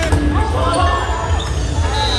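Reverberant gym sound of an indoor volleyball rally: players' voices and movement on the court, echoing in a large hall, over a steady low bass beat of music.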